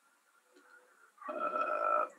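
A man's drawn-out hesitation sound, a steady voiced "uhh", starting a little past halfway through after a second of near silence.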